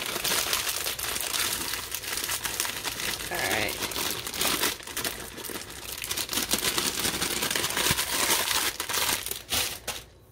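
A plastic chocolate-chip bag crinkling steadily as chips are shaken out of it, stopping suddenly just before the end.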